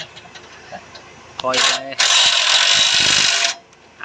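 A loud, steady hissing noise lasting about a second and a half, from repair work under an off-road truck, which starts and cuts off suddenly.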